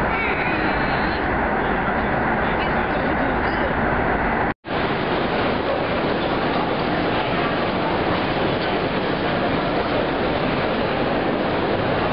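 Passenger train running, heard from inside the carriage as a steady rumble and rushing noise. About four and a half seconds in the sound cuts off for an instant, and a similar steady rushing noise follows.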